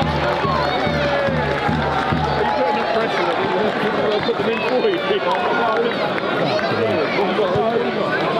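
Funk backing music with a repeating bass line that cuts off about two and a half seconds in, over many voices shouting and cheering on and around the pitch.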